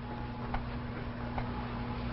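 Two faint, short clicks of small objects being handled on a table, about half a second and a second and a half in, over a steady low hum and hiss.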